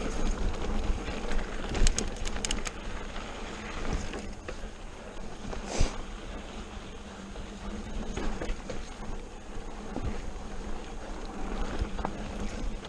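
Mountain bike riding over slickrock and sand: steady wind noise on the microphone and tyre rumble, with rattling clicks from the bike on rough rock about two seconds in and a sharper knock near the middle.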